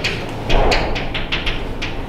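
Chalk writing on a blackboard: a quick, irregular run of sharp taps and scratches, about five or six a second, as a word is written.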